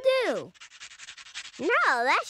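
Fingers scratching through hair in fast, even strokes, a rasping rub. A wordless voice slides down in pitch at the start and makes rising-and-falling sounds near the end.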